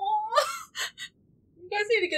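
A woman's drawn-out whimper rises in pitch and breaks into a sharp gasp, followed by two quick breaths. A voice starts up near the end.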